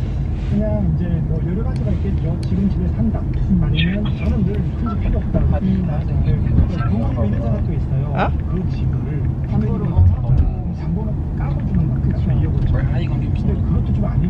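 Steady low rumble of a car's cabin on the move, with voices talking over it.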